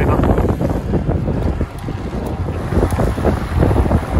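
Wind buffeting the microphone of a camera riding on a moving road bike: a loud, uneven low rumble.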